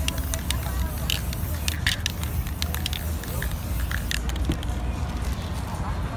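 Aerosol spray-paint can hissing in short bursts through the first four seconds, then stopping, over a steady low rumble of street noise.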